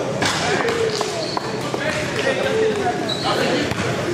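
Basketball bouncing on a hardwood gym floor, with sharp knocks and people's voices calling out and reacting around the court in a gym hall.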